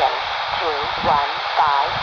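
Warsaw VOLMET aviation weather broadcast on 127.600 MHz, heard through a handheld airband scanner's speaker: a voice reading the weather report over steady radio hiss.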